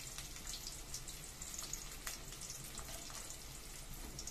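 Sliced red onion frying in oil in a kadai: a faint, steady sizzle with scattered irregular crackles.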